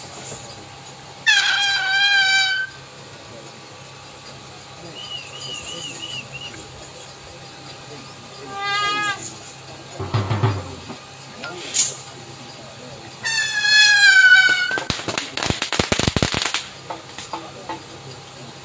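Three long, high-pitched wavering yells, about a second in, near the middle and about two-thirds through. They are followed by a quick rattle of sharp cracks lasting a second or two.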